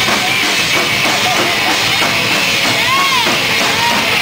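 Live heavy metal played loud and dense by several rock drum kits with double bass drums and electric guitars. Near the end a guitar note bends up and falls back.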